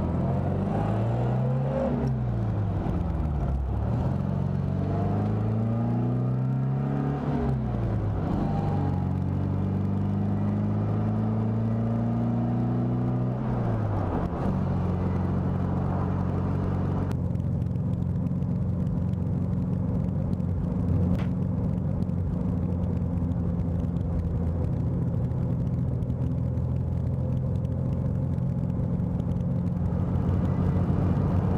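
1964 MGB roadster's 1.8-litre four-cylinder engine under way: it rises in pitch and drops sharply several times in the first half as the car accelerates and shifts up, then holds a steady pitch while cruising.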